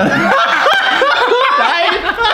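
Two men laughing loudly together, a run of quick, high-pitched laughs.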